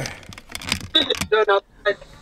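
Rustling and clicks of a hand handling a camera close to its microphone, followed about a second in by brief bits of a man's voice.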